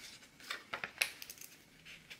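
A few faint, light clicks and taps from crafting tools and sticker sheets being handled on a desk, three of them close together around the middle.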